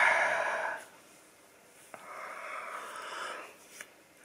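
A man's heavy breathing: a loud breath right at the start, then about two seconds in a longer, softer breath in as a yawn begins.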